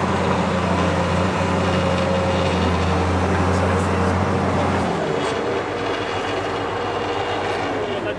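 Diesel engine and winch of a cable yarder running steadily under load while hauling a carriage and its load along the skyline; the engine note drops and eases about five seconds in.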